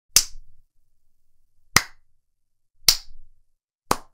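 Four sharp smacks of a hand, spaced about a second apart.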